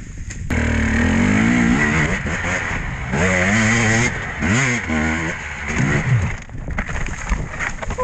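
Dirt bike engine revving hard in repeated rises and falls, starting suddenly about half a second in and dropping away at about six and a half seconds.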